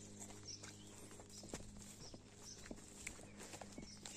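Faint footsteps on grass and soil: irregular soft ticks and rustles as someone walks slowly, against quiet outdoor background.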